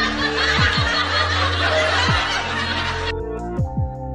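Laughter over background music with deep, falling bass beats; the laughter cuts off suddenly about three seconds in, leaving the music.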